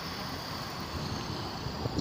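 Steady road noise of a car in motion: an even rumble of tyres and engine.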